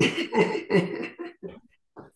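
Laughter in a run of breathy bursts that fade out over about a second and a half.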